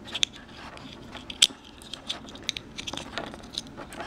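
Light plastic clicks and handling rustle as a Fitbit Charge 3 tracker is fitted into its clamp-style charging clip, with two sharper clicks, one about a quarter second in and one about a second and a half in.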